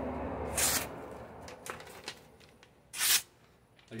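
A sharp handmade bowie knife slicing through a sheet of glossy catalogue paper to test its edge: a short crisp hiss of a cut about half a second in, rustling paper, and another short paper hiss about three seconds in.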